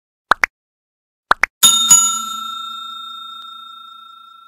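Subscribe-button animation sound effects: two pairs of quick clicks, then a bright bell struck twice in quick succession that rings on and fades slowly.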